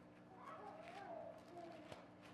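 Near silence, with a faint high-pitched call that rises and falls for about a second and a half. Light rustle of paper pages being turned.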